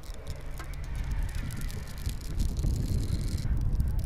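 A 30-wide big-game fishing reel giving line to a hooked stingray: quick, irregular clicks from the drag that stop about three and a half seconds in. Wind rumbles on the microphone underneath.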